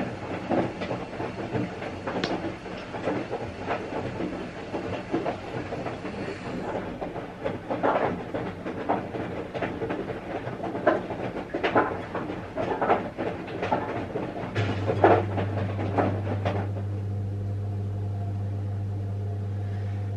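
Washing machine running, with irregular rumbling and clattering. About fifteen seconds in, a steady low hum sets in, and soon after the clatter dies away, leaving mostly the hum.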